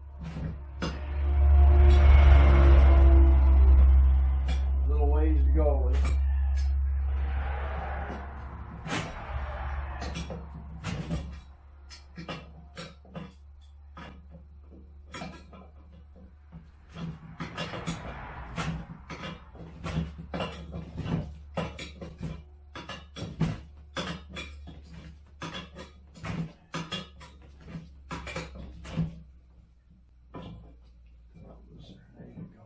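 Short sharp metallic clicks and clinks of a wrench and steel parts as bolts are tightened on a Gorilla Cart's steel frame. For the first ten seconds or so a loud low rumble with a murmur above it covers the work.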